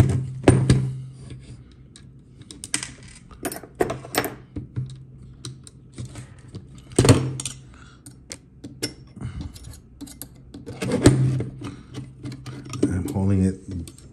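Irregular clicks and taps of small plastic and metal parts being handled as a 3D-printer print head is assembled and its long bolts lined up, a few sharper knocks among them.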